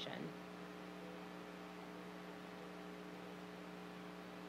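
A steady low electrical hum of several unchanging tones over faint hiss, in a pause between speech; the last syllable of a word is cut off at the very start.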